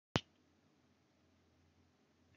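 A single short, sharp click right at the start, followed by faint steady hiss from the recording.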